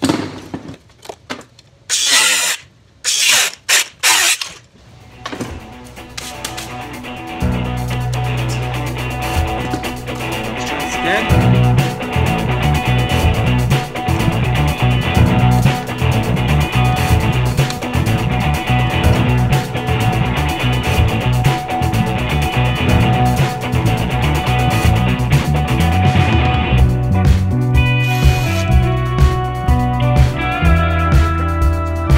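A few short bursts of a power tool cutting through a metal bracket in the first seconds, then background music with a steady bass line for the rest.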